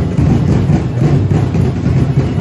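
Loud street-dance parade music with drums and percussion, its low beat heavy and continuous.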